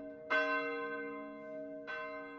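A single church bell tolling slowly. Each stroke starts sharply and rings on with a long fading hum. There is a faint stroke right at the start, a strong one about a third of a second in, and another near the end.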